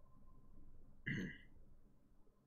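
Quiet room tone broken by one short human vocal sound about a second in, lasting under half a second.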